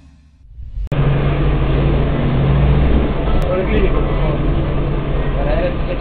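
A short rising swell cuts off about a second in. It gives way to the steady low drone of a city bus's engine and road noise heard from inside the cabin, with faint voices underneath.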